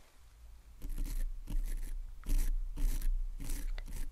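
Mascara wand brushed close against the microphone as if coating the listener's lashes: short bristly scraping strokes, about two a second, starting about a second in.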